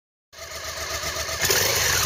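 Motorcycle engine sound swelling in about a third of a second in and loudest from the middle onward, its pitch beginning to drop near the end as if the bike were passing by.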